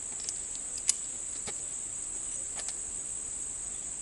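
Steady high-pitched insect chorus, with a few faint clicks, the sharpest about a second in.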